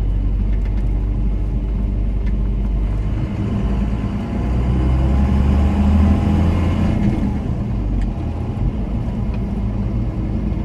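1993 Dodge Ram 250's 5.9-litre 12-valve Cummins inline-six turbodiesel pulling the truck down the road, heard from inside the cab with tyre and road noise. The engine gets louder about halfway through, then eases off.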